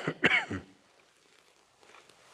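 A man clearing his throat with two short coughs in the first half-second.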